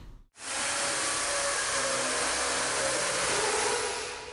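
A steady rushing hiss begins after a brief silence about half a second in and eases off near the end.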